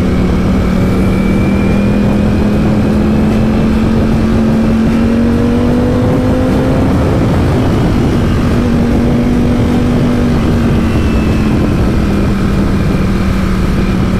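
Ducati Panigale V4S's V4 engine running in third gear as the bike accelerates along the highway: its note rises steadily to a peak about halfway through, then drops back as the rider eases off. A heavy rush of wind runs beneath it.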